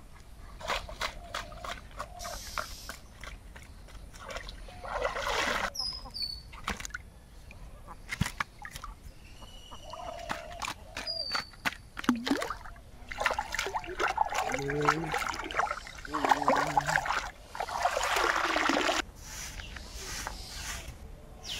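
Water splashing and sloshing in bursts as chunks of fish are rinsed in a plastic colander dipped in a pond, loudest about five seconds in and again over the second half. Ducks call and a bird chirps between the splashes.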